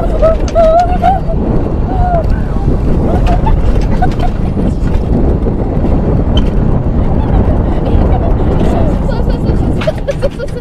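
Alpine mountain coaster sled running fast down its steel rail track: a loud, steady rumble of the wheels on the rails. Short excited cries from the riders sound in the first second or two.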